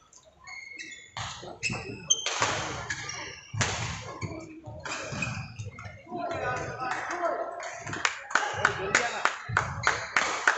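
Badminton rally: sharp racket strikes on the shuttlecock and short squeaks of shoes on the court surface. Voices join from about halfway through.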